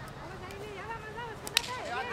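A field hockey stick striking the ball: a single sharp crack about one and a half seconds in, with voices calling on the pitch underneath.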